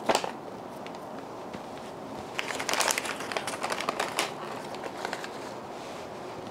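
Crumpled packing paper rustling and crinkling as it is handled, a run of small clicks and rustles that is busiest about two and a half to three seconds in.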